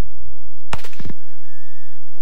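Suppressed rifle shots, several fired almost together in a quick ragged volley about three-quarters of a second in, from hunters firing at once. A thin steady high tone follows the shots.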